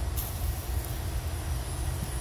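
A low, uneven rumble of outdoor background noise with no speech, and one faint click just after the start.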